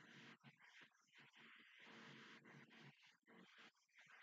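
Near silence, with only a very faint, uneven sound underneath.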